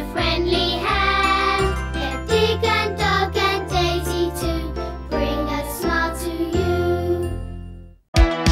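Children's TV end-credits theme music with a stepping bass line under a chiming melody, fading out to silence over the last second.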